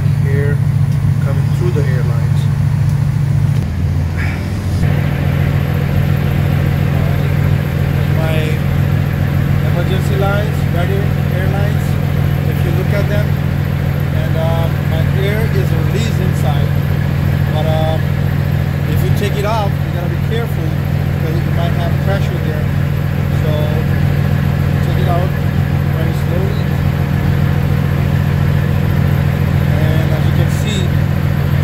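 Semi-truck diesel engine idling close by: a steady low drone that shifts slightly about four seconds in, with faint voice-like sounds over it.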